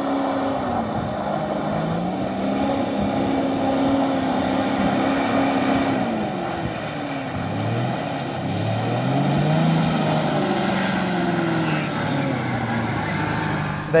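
A 4x4's engine revving hard in low range as it pushes through soft mud and muddy floodwater, keeping momentum with high revs. The pitch holds high, drops away twice as the revs fall, and climbs again in the second half.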